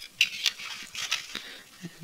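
Hard plastic parts of a 1/144 Gunpla model kit and its clear plastic stand being handled: a scattered string of light clicks and scrapes.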